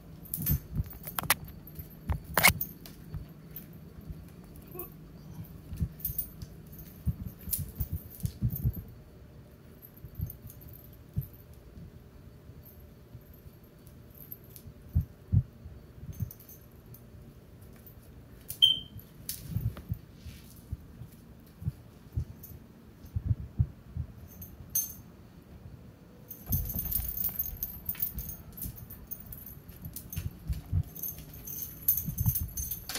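Cats playing with a small toy on a tile floor: scattered taps, clicks and light jingling. There is a brief high chirp about two-thirds of the way through and a longer rustle near the end.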